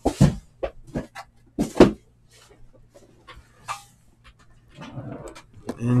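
Shrink-wrapped cardboard trading card hobby boxes being pulled from a case and set down on a table: two louder thumps, about a quarter second in and near two seconds, then scattered lighter taps and a soft rustle of handling.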